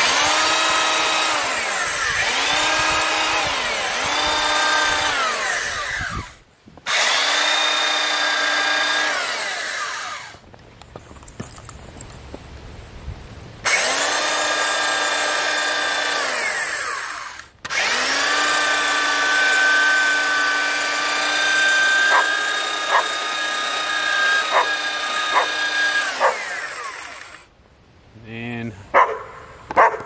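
Corded belt sander running in four separate bursts as it bevels the top edges of wooden fence posts. Its motor whine dips in pitch a few times in the first burst and winds down at the end of each burst.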